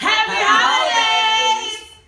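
Several voices singing out together in a short closing flourish, a high rising glide at first and then held notes, fading away about a second and a half in.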